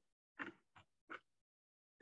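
Near silence on a video call's audio, broken by three faint, brief sounds in the first second or so.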